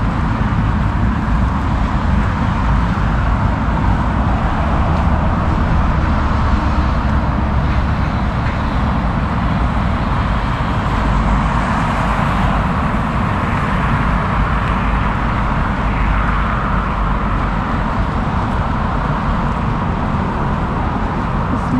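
Steady road traffic noise with a continuous low rumble and no distinct events.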